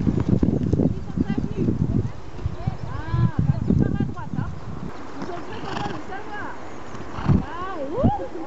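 Hoofbeats of a horse cantering on grass, a dense run of thuds that is loudest in the first few seconds as it passes close and then fades. Short rising-and-falling calls sound over it, a few near the middle and more toward the end.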